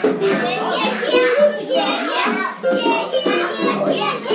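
Children's voices talking and calling out over one another, with music underneath.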